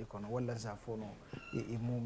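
A man speaking in conversational speech that the recogniser did not transcribe. A brief, faint, high, steady tone comes about one and a half seconds in.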